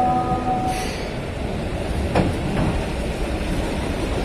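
Keihan 700 series electric train rolling slowly into the station and braking, its wheels rumbling on the rails. A steady whine fades out under a second in, with a short hiss, and a single clank comes about two seconds in.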